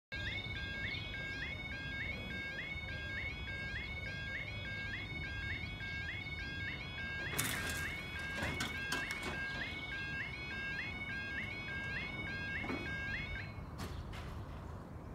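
Level crossing warning alarm: an electronic yodel of short rising tones repeating about twice a second while the barriers lower. A few knocks come about halfway through, and the alarm stops with a click near the end, once the barriers are down.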